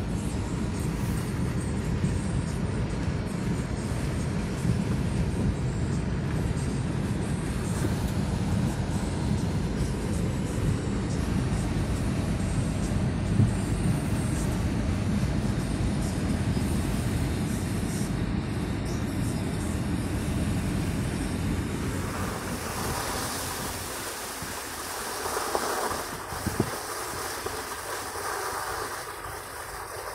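Road and engine noise heard inside a moving car on slushy, snow-covered streets: a steady low rumble of tyres and engine. About two-thirds of the way through the rumble drops off, leaving a quieter hiss with a few light knocks.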